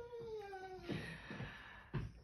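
Faint, drawn-out meow of a cat, one call falling steadily in pitch over about a second.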